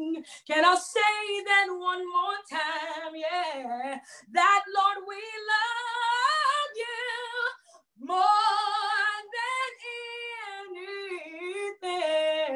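A woman singing a gospel solo unaccompanied, in long held phrases with strong vibrato and short breaths between them, heard over a video call.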